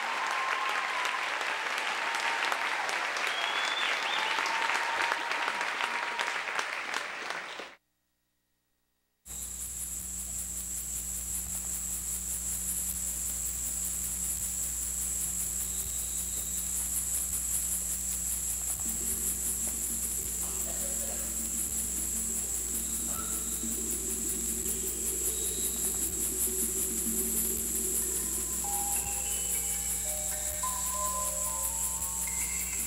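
Audience applauding for several seconds, cut off abruptly. After a short silence, a steady high chirring of crickets from the dance's soundtrack begins, with low sustained music tones coming in partway through and a few short melody notes near the end.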